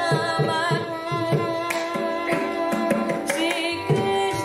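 Live Carnatic kriti: a woman singing with ornamented, wavering pitch, doubled by violin, over a steady pattern of mridangam and ghatam strokes.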